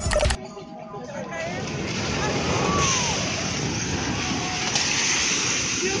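A multi-storey building collapsing in an earthquake: a dense rumble of falling debris that swells up about a second in and holds, with people's voices crying out over it.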